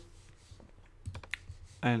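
Several faint, sharp clicks from a computer mouse and keyboard being worked, bunched together in the second half after a quiet first second.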